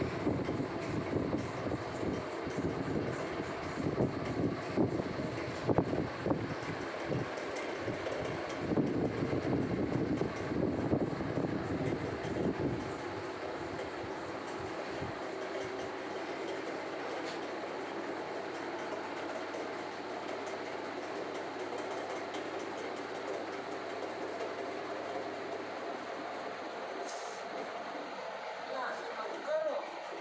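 Hands rubbing and kneading hair and scalp right against the microphone, giving an irregular scrubbing, rustling noise. About thirteen seconds in this gives way to a quieter, steady hum.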